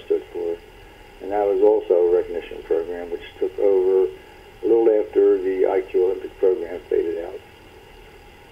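Speech only: a person talking in an interview, over a cut-off, radio-like recording.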